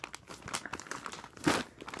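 A mailing package crinkling and rustling in the hands as someone struggles to get it open, in irregular bursts with a louder crackle about one and a half seconds in.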